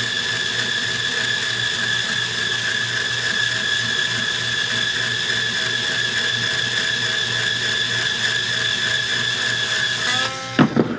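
Handheld power string winder running steadily with a high whine, turning a guitar tuning post to wind on a new string; it stops right at the end.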